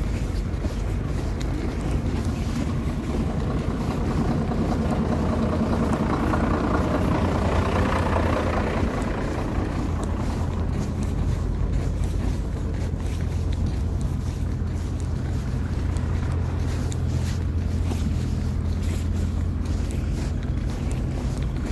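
Steady low drone of idling lorry and car engines. A louder engine noise swells and fades between about four and twelve seconds in.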